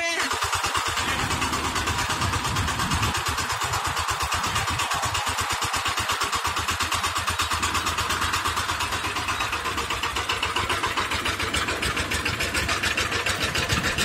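VST Shakti 130 DI power tiller's single-cylinder diesel engine running steadily at a standstill, with an even, rapid chugging beat.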